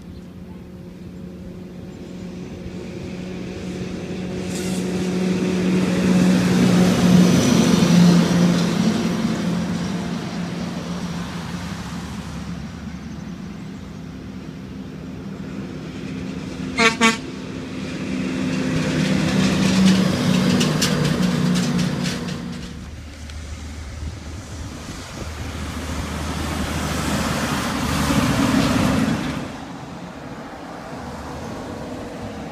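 Semi trucks passing on the road one after another, each rising and falling in loudness with a steady low drone that drops slightly in pitch as the first goes by. About halfway through, a short double horn toot.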